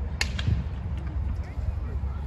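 A football kicked once, a sharp smack a fraction of a second in, followed by a few fainter knocks, over a steady low rumble on the microphone and faint players' voices.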